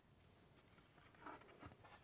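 Near silence: room tone with a few faint rustles and scrapes of a stiff card being handled.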